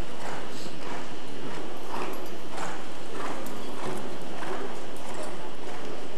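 Hoofbeats of Lipizzaner horses trotting on soft arena footing in a large reverberant hall: a dull, repeated beat roughly every half second.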